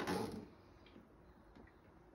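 A few faint clicks from a plastic humidifier hose and its fitting being handled at a plastic tub's port, over a low steady background.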